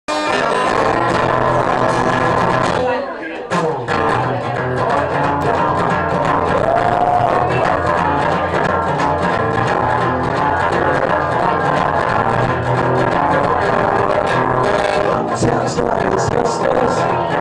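Two acoustic guitars playing together in a live duo performance, with a short drop in level about three seconds in.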